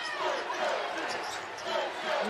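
Basketball dribbled on a hardwood court, with arena crowd noise and voices around it.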